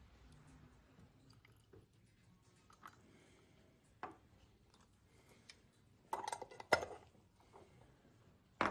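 Faint handling of lab glassware and bottles on a tiled bench: one light knock about four seconds in, then a short clatter of knocks and clinks a couple of seconds later.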